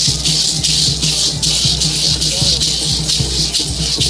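Parachicos' chinchines, gourd rattles filled with seeds, shaken together by many dancers in a steady beat of about two shakes a second.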